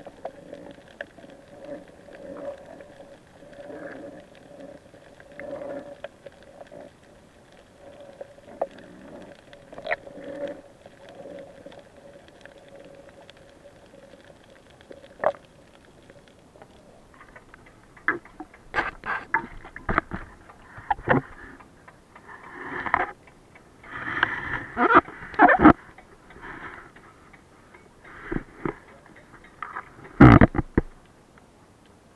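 Water sounds picked up by a submerged action camera: at first a muffled steady hum with faint knocks, then, in the second half, a run of loud splashes and knocks as the camera moves about at the water surface.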